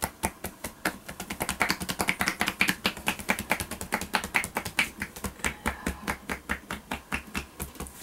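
Massage percussion (tapotement): hands striking rapidly on a person's upper back and shoulders through a shirt, in a steady rhythm of about eight to ten light slaps a second.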